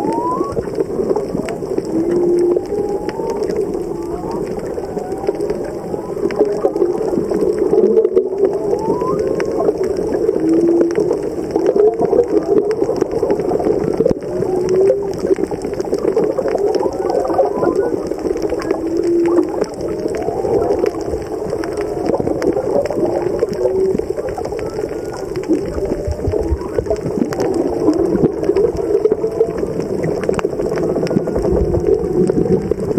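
Humpback whale song heard underwater: a steady run of low moans and short whoops that glide up and down in pitch, one after another, over a background of fine crackling.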